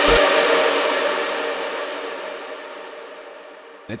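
The end of a synth lead melody snippet, its bass cutting off right at the start, followed by its long ValhallaRoom reverb tail fading steadily for about four seconds, the highs dying away first. This is the reverb send before any compression, which dies out too quickly and falls way too far into the background.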